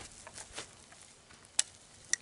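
Faint handling sounds from a break-action rifle being worked by hand, with one short, sharp click about a second and a half in.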